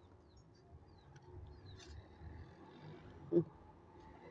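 Quiet garden ambience with a few faint, short bird chirps, and one brief low call about three seconds in.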